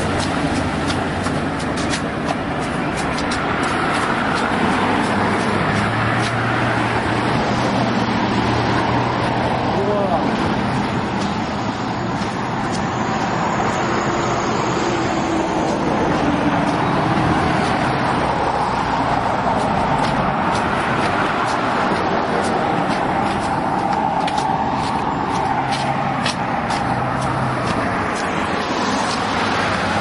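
Steady road traffic noise from cars passing close by on the roadway.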